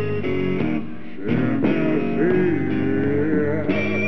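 Live rock band playing, led by electric guitar over bass and drums, with notes bending in pitch.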